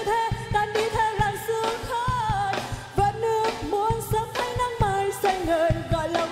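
A woman singing a dance-pop song over a band playing a steady drum beat.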